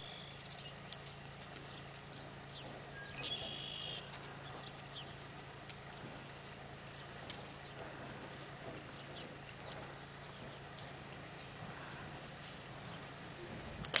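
Faint, muffled hoofbeats of a Paint Horse mare walking on soft arena dirt, irregular soft thuds over a low steady background hum. A short high-pitched call sounds briefly about three seconds in.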